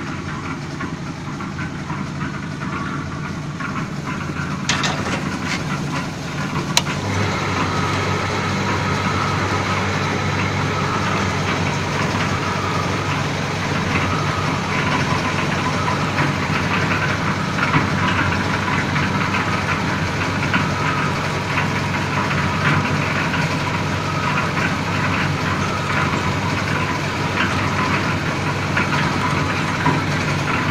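Steady drone of construction machinery running, the material hoist that lifts building material to the roof working beside a concrete mixer, growing a little louder about six seconds in, with a couple of sharp clicks.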